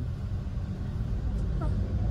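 Steady low rumble of a car heard from inside the cabin. A short, faint voice sound comes about a second and a half in.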